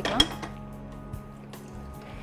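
Water being poured from a bottle into an empty nonstick cooking pot, a steady splashing fill, with a sharp knock near the start.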